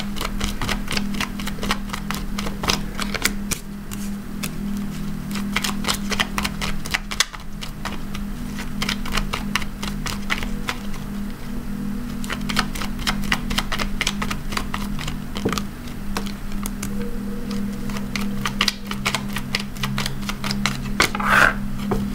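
A deck of tarot cards shuffled by hand, a long run of quick crisp card clicks and snaps, with cards laid down one by one on a wooden table. A steady low hum runs underneath.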